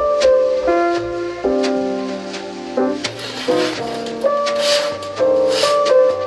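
Instrumental background music: held keyboard-like chords that change every second or so, with two hissing swells in the second half.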